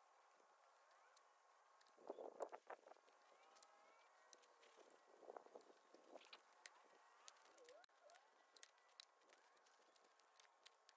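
Faint rustling and crackling of dry fallen leaves and wood mulch being gathered by hand, in two short bursts about two and five seconds in, over near silence with scattered faint clicks.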